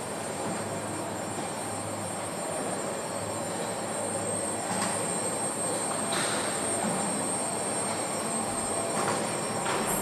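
Rail-guided factory transfer carriage carrying a car body along floor tracks, running steadily with a high whine and a few sharp clicks and squeals.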